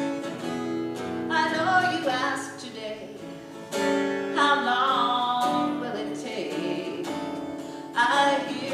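A woman singing a slow folk song to her own acoustic guitar, in long held phrases, with a fresh strummed chord nearly four seconds in.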